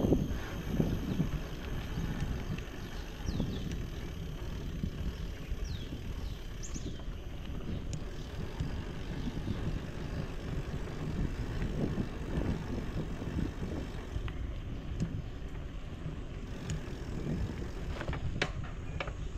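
Wind rumbling on the microphone together with tyre noise from a bicycle rolling along a paved lane, a steady low rumble with small surges.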